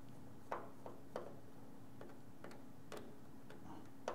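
Precision screwdriver turning tiny screws in an iPhone 7's internal cable shroud: a handful of faint, irregularly spaced metallic clicks.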